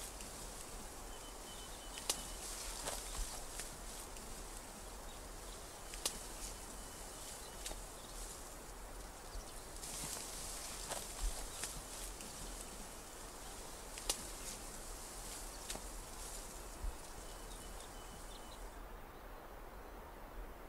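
Rustling of bamboo leaves and stems, with occasional sharp snaps and cracks, as people move on foot through a dense bamboo thicket over a steady background hiss. A faint high chirping comes briefly near the start and again near the end.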